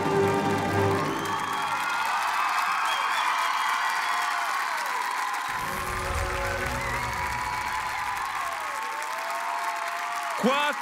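Ballet music fades out within the first two seconds, giving way to an audience applauding and cheering, with shouts rising over the clapping.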